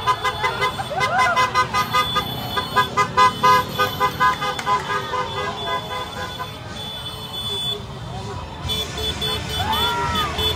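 Vehicle horns tooting in rapid, repeated short beeps for the first five seconds or so, over a crowd shouting and cheering.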